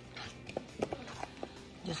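Thick oatmeal cookie dough being stirred in a stainless steel mixing bowl, with a few light knocks of the stirring utensil against the bowl.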